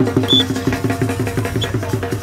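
A drum beaten in a fast, even run of about six strokes a second, each stroke with a slight drop in pitch.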